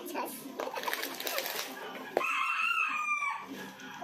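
A loud bird call: one call about a second long that starts abruptly just past the middle and dips slightly in pitch at its end.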